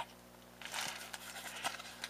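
Faint rustling and a few light clicks of a paper-and-plastic die package being handled and turned over, over a steady low electrical hum.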